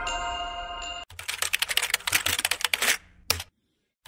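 Rapid computer-keyboard typing clicks for about two seconds, then one lone click and a moment of silence. Before the typing, the last chiming notes of a music jingle fade out.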